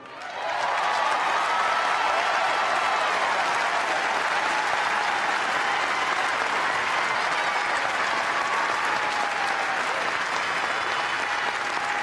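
Large convention crowd applauding, with voices cheering in it. It swells within the first second and holds steady.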